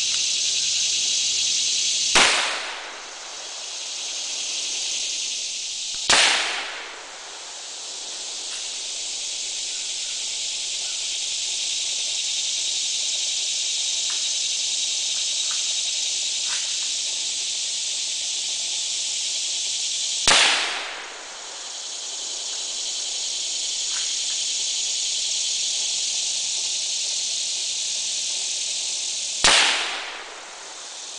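Four rifle shots from a Savage Model 11 Lightweight Hunter bolt-action rifle in 6.5mm Creedmoor, each a single sharp crack. Two come close together about two and six seconds in, one around twenty seconds in, and one near the end. A few faint clicks fall between the second and third shots.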